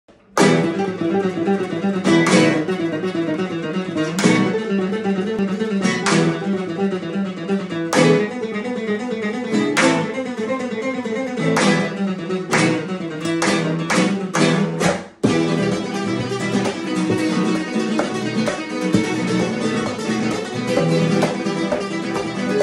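Four nylon-string guitars playing a waltz together in a flamenco style, with a strong strummed chord accent about every two seconds. About thirteen seconds in comes a run of quick strummed chords, a sudden short break, then the ensemble carries on more evenly.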